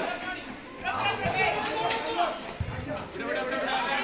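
Overlapping voices of players and onlookers calling out and chattering during a volleyball rally, with a couple of short thuds from the ball being struck, about a second in and again past halfway.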